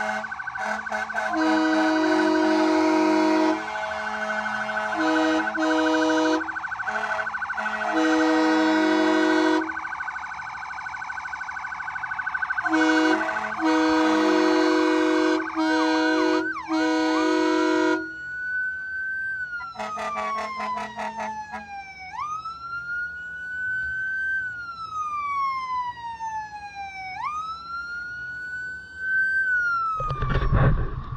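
Emergency vehicle air horns sounding in repeated blasts of a few seconds over a steady siren tone. From about two-thirds of the way in, a siren wails on its own, its pitch sliding slowly down and then jumping quickly back up, twice.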